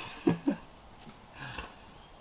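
Two short, muffled vocal sounds from a man speaking with a pipe clenched in his teeth, then a faint soft rustle about a second and a half in.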